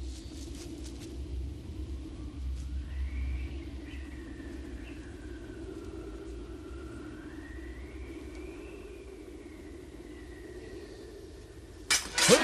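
Wind howling over a low rumble, with a thin whistle that rises and falls slowly through the middle; a sharp hit near the very end.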